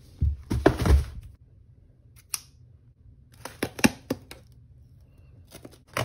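A cardboard shipping box thumping and knocking as it is set down on a wooden floor during the first second, then scattered sharp clicks and scrapes as scissors work at the box's packing tape.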